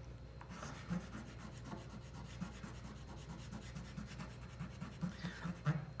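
A chalk pastel stick rubbing on paper in quick, short back-and-forth strokes, filling in a small shape. Faint and irregular.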